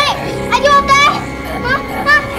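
High-pitched child's voice crying out in short exclamations without clear words, over steady background music.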